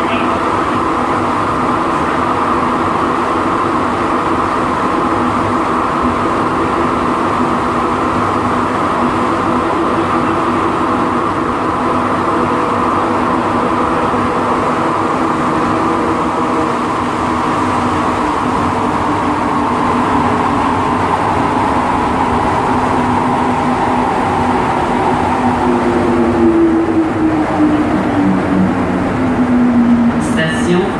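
Montreal Metro Azur rubber-tyred train heard from inside the car while running between stations: a steady, loud rumble and hum from the tyres and traction motors. In the last few seconds the motor tones fall in pitch as the train slows for the next station.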